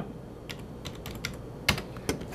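A handful of sharp, scattered clicks of computer keys being pressed, the loudest near the end.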